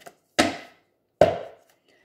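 Two sharp knocks of a tarot deck tapped against a cloth-covered table, about 0.8 s apart, each dying away quickly.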